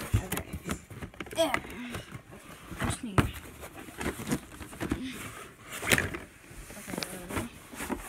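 Handling noises: a string of clicks, knocks and rustles, with a few short murmured bits of voice.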